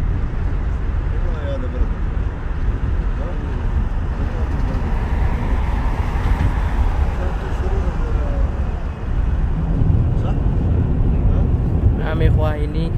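Steady low road and engine rumble heard from inside a moving car, with a faint voice talking under it. About halfway through, the hiss briefly swells as another car passes close alongside.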